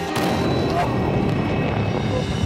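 A dense, rumbling blast noise swells suddenly just after the start and carries on over background music: the sound of the explosive sphere detonating into a fireball, as laid over the slow-motion replay.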